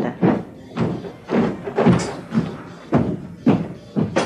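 A series of thuds, about two a second and a little uneven, over background music.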